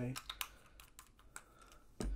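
A quick run of light clicks and taps, closely spaced at first and thinning out after about a second: the cap being screwed onto a small bottle of knife oil and the bottle set down in a mat tray.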